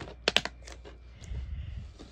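Plastic DVD cases being handled: a quick cluster of sharp clicks and clacks near the start, then softer handling noise.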